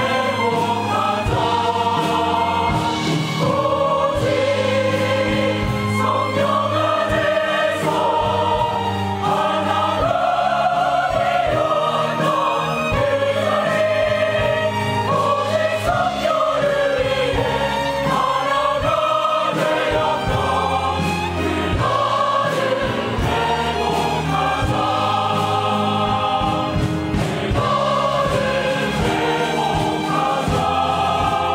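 A mixed choir of men and women singing a Korean gospel song in unison phrases, with instrumental accompaniment underneath.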